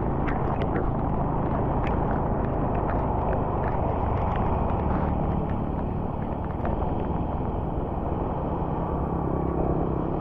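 Steady low rumble of wind and tyre noise from a vehicle moving along a rain-soaked highway, with scattered sharp ticks in the first half.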